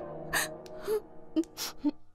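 A woman's sharp gasping breaths, several in a row, over background music whose held notes fade out.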